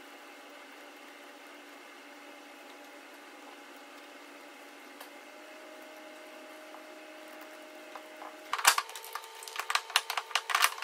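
Faint steady hum with a single light click about halfway through. Then, about a second and a half before the end, comes a run of sharp clicks and clattering knocks as hand tools and hard metal parts are handled. The first knock of the run is the loudest.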